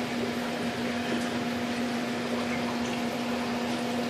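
Steady background hum with a constant low tone over an even hiss, like a fan or appliance running in a small room.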